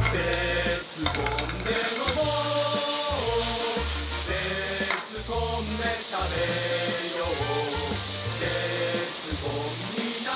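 Diced chicken, mushrooms and onion sizzling in oil in a hot wok, under background music with a moving bass line.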